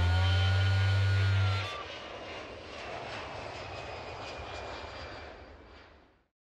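Airplane fly-by sound effect: a loud steady low drone that drops away under two seconds in, leaving a softer rushing noise that fades out.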